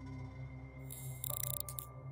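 Dark ambient background music: a low pulsing drone under a held high tone. About a second in there is a short burst of crackly, static-like noise, and a new steady electronic tone enters partway through.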